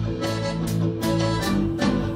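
Live folk-rock band playing an instrumental intro: accordion and electric guitar over a drum kit, with a steady beat.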